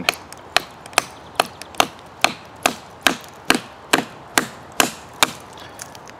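Light, evenly paced knocks of a wooden baton on the spine of a Helle Temagami knife, about two strikes a second, splitting a stick and driving the blade through a knot.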